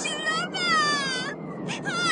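A cartoon rabbit girl's high-pitched voice wailing: one long falling cry, then another starting near the end.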